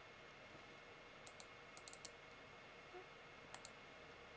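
Faint clicking at a computer over near-silent room tone: a pair of clicks about a second in, a quick run of four just before two seconds, and a fast double click near the end.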